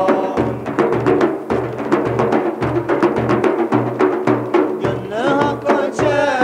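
Several large frame drums (daf) beaten together in a steady rhythm, deep strokes about twice a second with sharper slaps between, under men's voices singing a Sufi hymn (ilahi); the singing swells into a new gliding line near the end.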